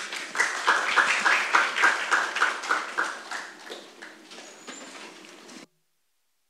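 Audience applauding, the clapping dense at first and then thinning and dying away. The sound cuts off abruptly shortly before the end.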